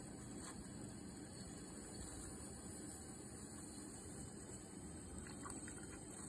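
Strange, scream-like noise from a ThinkPad laptop's speakers, a faint steady hiss with a high edge, while the machine is overloaded with CPU and disk near 100% and the video-editing app hangs. It is a glitching audio output, not the fan: it goes away when the sound is muted.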